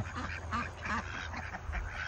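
A small flock of domestic ducks quacking, with short calls scattered through the moment.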